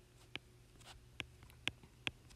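Faint handwriting with a stylus on a tablet screen: about five light, irregularly spaced taps and clicks as the pen strikes and lifts off the glass.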